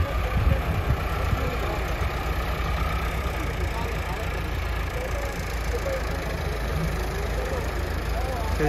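Massey Ferguson 385 tractor's four-cylinder diesel engine running steadily as the tractor drives and turns across a tilled field.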